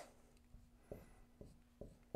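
Faint dry-erase marker strokes on a whiteboard: three soft taps about half a second apart as letters are written, over near silence.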